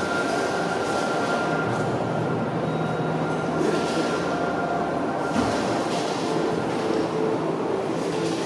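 Steady rumbling ambience of a large exhibition hall, a dense even noise with a few faint held tones.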